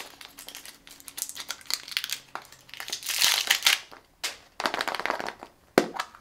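Plastic crinkling and rustling in irregular bursts as a plastic surprise egg's wrapping seal is peeled off and the egg is pried open, loudest about halfway through. A sharp click comes near the end.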